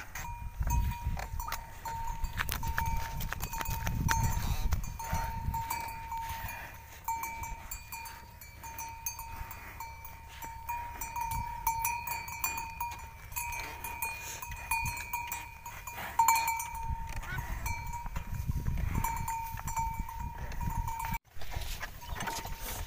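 A water-buffalo cart on the move: a steady ringing tone carries through, over low rumbles and scattered clicks and knocks from the wooden cart.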